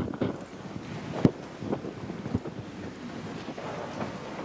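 Microphone handling noise: a faint rustle with a few sharp knocks spread through the first half.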